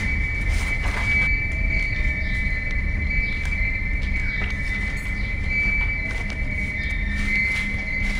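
A steady high-pitched whine, held without a break over a low rumble, with a few faint rustles.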